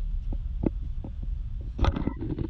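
Low, pulsing rumble of wind and handling noise on a hand-held camera carried at walking pace, with a few short sharp clicks and knocks, the loudest just before the end.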